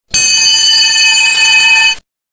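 A loud, steady electronic tone, several pitches sounding together and held unchanged for nearly two seconds, then cutting off suddenly.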